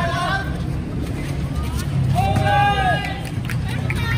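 Voices of players and onlookers calling out during a basketball game, with one drawn-out call about two seconds in. Underneath is a steady low hum and a few short knocks.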